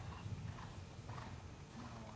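Faint, dull hoofbeats of a ridden Westphalian gelding moving over the soft footing of an indoor arena.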